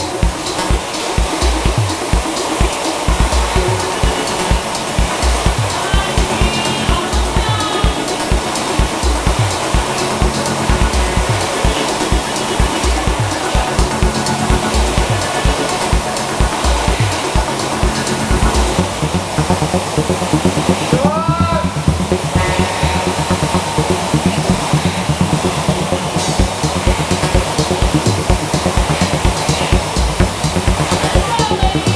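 Air-resistance flywheels of several Concept2 rowing machines whooshing in a steady rush under loud music with a drum beat.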